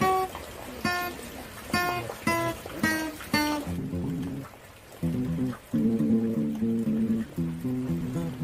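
Cheap linden-wood acoustic guitar (Med-Blu-C) played by hand. For the first few seconds single bright notes are picked one at a time and left to ring. After a short pause, lower notes follow in a quicker run.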